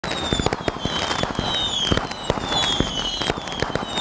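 Firecrackers going off in a rapid, continuous string of sharp cracks, with high whistles that fall in pitch about once a second.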